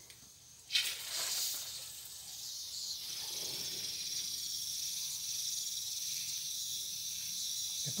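Water spraying from a garden hose onto potted seedlings: it starts suddenly about a second in and then runs as a steady hiss.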